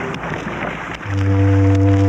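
A low, steady horn note from about a second in, held without change, as a boat-whistle sound effect for the scene change to a river. A second of noisy haze comes before it.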